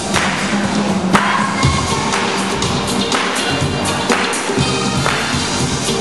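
Loud music with a steady beat, about two beats a second, played for breakdancing.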